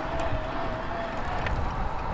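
Electric road bike being ridden with its assist motor in boost mode: a steady, thin motor whine over wind and tyre rumble. The whine stops a little past halfway, and a few faint clicks come through.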